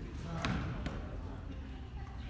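A basketball bounced twice on a hardwood court, two sharp thuds under half a second apart, as a free-throw shooter dribbles before the shot.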